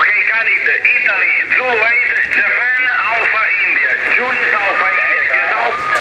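A man's voice received over HF single-sideband radio on the 10-metre band, played through a Yaesu FTdx5000 transceiver: narrow, tinny speech with a steady low hum beneath it.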